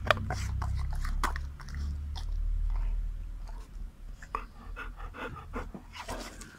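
Golden retriever biting and chewing a piece of cucumber taken from a hand, with wet crunches at irregular intervals. A low rumble sits under the first half.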